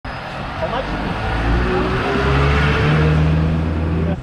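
A motor vehicle's engine running close by on the road, over a rush of traffic noise. It grows louder toward the middle and its hum steps up in pitch.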